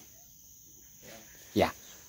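Crickets trilling steadily, a faint high-pitched drone under a quiet background.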